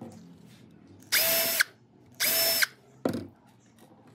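Power drill running in two short bursts of about half a second each, with a steady motor whine that bends up in pitch as each burst stops. A shorter, duller knock follows near the end.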